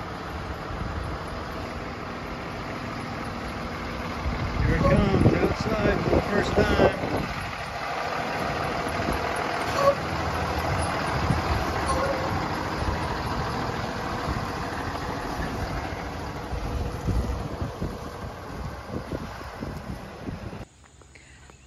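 School bus engine running as the bus pulls out and drives off, a steady hum that gets louder for a few seconds around five seconds in, with voices nearby.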